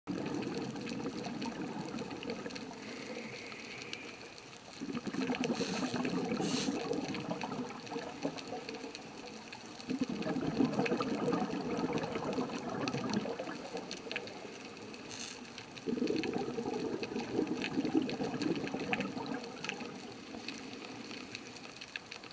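Underwater scuba breathing: the diver's exhaled bubbles rush up past the microphone in four swells about five to six seconds apart, with quieter gaps for the in-breaths.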